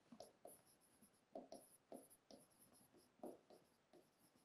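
Faint, irregular short strokes of a marker writing on a whiteboard.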